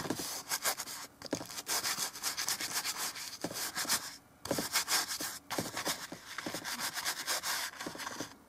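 Stiff bristle brush scrubbing oil paint onto canvas in quick, short strokes, with a few brief pauses.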